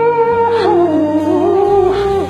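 A man's voice singing a long held note that breaks, about half a second in, into a wavering run sliding lower, the end of a sung phrase in a gospel song.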